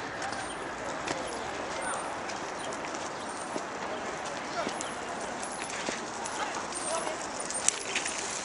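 Outdoor park ambience: indistinct voices of people in the distance under a steady background hiss, with scattered light clicks and taps, the sharpest one near the end.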